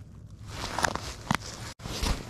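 Rustling from a small plastic bait cup and its lid being handled, with two sharp plastic clicks about a second apart.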